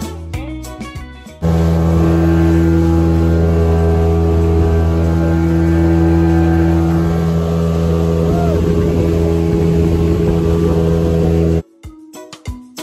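Background music with plucked notes, then about a second and a half in, a motorboat engine running loud and steady at speed, with rushing wind on top. It cuts off abruptly near the end.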